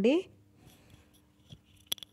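Faint rustling of a cotton-linen blouse being handled and smoothed out, with a small click about one and a half seconds in and a sharp click just before the end.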